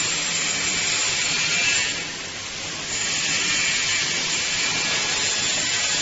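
Steady, loud hiss of machinery noise on a factory floor, with a brief dip about two seconds in.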